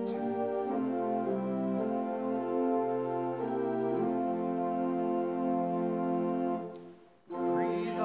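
Hymn accompaniment on an organ-like keyboard: sustained chords that change every second or so. About seven seconds in the sound fades out briefly, and then a new chord starts.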